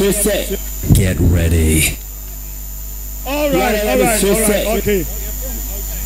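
Steady electrical mains hum from a sound system, with a high-pitched voice speaking in three short stretches over it and pausing in between.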